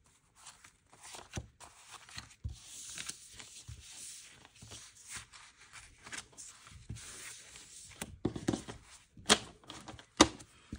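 Paper banknotes rustling and crinkling as hands gather loose bills into a stack. A few sharper slaps and taps come near the end as the stack is squared up.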